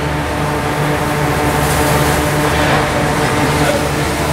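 Steady mechanical drone with a constant low hum that does not change, typical of the cooling or ventilation machinery of an indoor snow hall.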